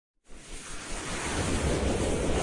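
A logo-intro whoosh sound effect: a wind-like noise that starts about a quarter second in and swells steadily louder.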